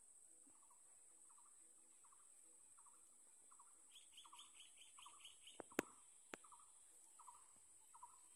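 Small birds calling faintly: one repeats a short note about one and a half times a second, and another gives a quick run of about eight higher notes around the middle, over a steady high-pitched insect buzz. A few sharp clicks near the middle are the loudest sounds.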